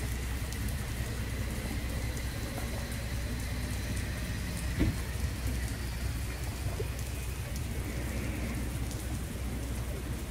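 Lake water lapping and splashing steadily against the pier posts and a moored boat, over a steady low hum. A single knock comes near the middle.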